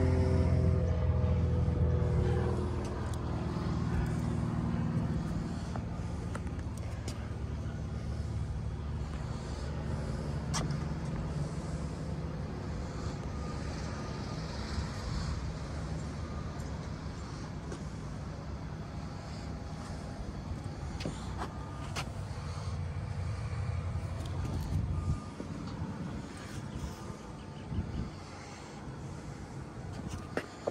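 Low engine rumble from a motor passing nearby, its pitch falling over the first few seconds, then a steadier drone that drops away about 25 seconds in. A few light knocks and clicks are scattered through it.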